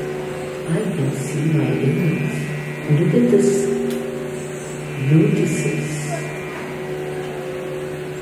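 Live Indian classical music accompaniment: a steady drone holds under a man's voice singing short phrases that come in about every two seconds.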